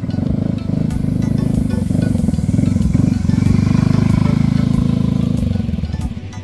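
Small motor scooter riding past on a dirt road: its engine grows louder as it approaches, is loudest a little past the middle, and drops away as it rides off, over background music.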